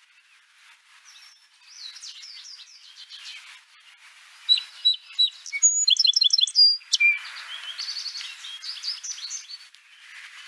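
Songbirds chirping and singing in quick runs of high, down-slurred notes and trills, loudest and densest in the middle.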